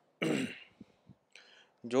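A man clearing his throat once, briefly, followed by a faint breath before his speech resumes near the end.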